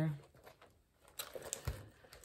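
A leather crossbody bag being handled and turned over: a few faint light clicks and rustles, with a soft thump about three-quarters of the way through.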